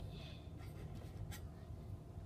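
Small plastic toy figures handled and shifted on a plastic dish: faint scraping with two light clicks, the second about halfway through, over a low steady room hum.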